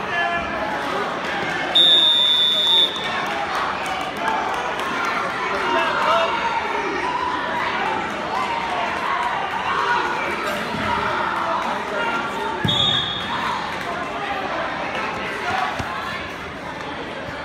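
Spectators' voices and chatter in a gymnasium. A loud, steady electronic buzzer sounds for about a second near the start and again briefly later on, as the match clock runs out.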